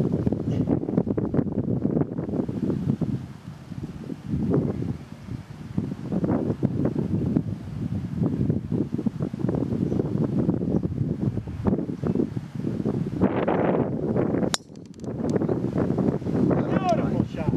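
Wind buffeting the microphone in uneven gusts. About a second and a half before the end comes a single sharp click: a driver striking a golf ball off the tee.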